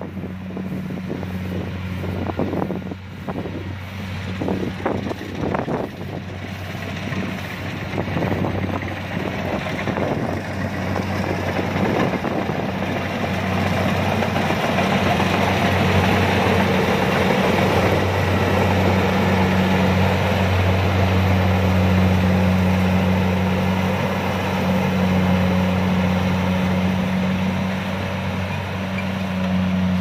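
Kubota DC-70 combine harvester at work harvesting rice: its diesel engine runs with a steady drone under the dense mechanical noise of the cutting and threshing gear. It grows louder after about twelve seconds as the machine comes close.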